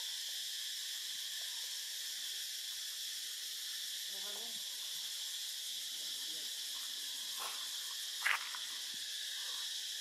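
Steady, high-pitched insect chorus droning without pause in the forest canopy. A single brief sharp sound cuts in a little past eight seconds, louder than the drone.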